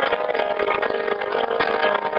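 Music from a piano-and-voice song: a held, buzzy note with a rough, grainy texture.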